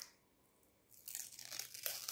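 Long artificial fingernails scratching and picking at a plastic protective sticker stuck on a blush compact, a faint irregular crinkling as the seal is worked loose. It starts about a second in, after a moment of near silence.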